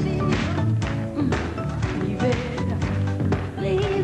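A woman singing a Latin pop song over a band with a steady beat, holding wavering notes.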